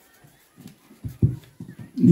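A man's low, muffled speech in short broken fragments, loudest in one brief burst about a second in.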